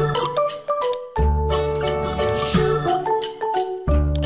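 Instrumental children's song playing as background music: a pitched melody over bass notes that return every few seconds, with a light beat.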